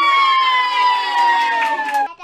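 A child's voice holding one long, high note that slides slowly down in pitch, the end of a sung line.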